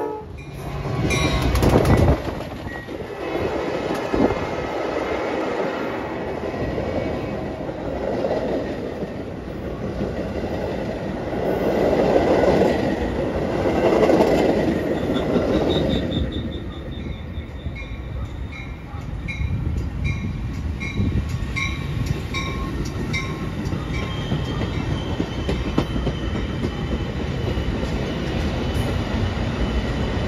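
Metra bilevel commuter cars rolling past close by: a steady rumble with clatter of wheels on the rails, louder for a few seconds midway and then easing off. A second Metra train rolls by on a farther track near the end.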